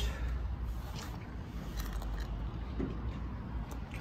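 Steady low microphone rumble under a faint hiss, with a few soft clicks.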